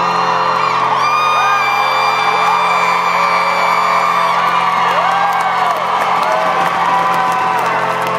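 Live band music with held, sustained chords, heard from the crowd, while audience members whoop and scream over it, one long high scream held from about one to four seconds in.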